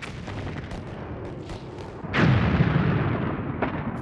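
Battle gunfire: scattered rifle shots cracking throughout, with a heavy explosion about two seconds in whose rumble dies away over the next second or so.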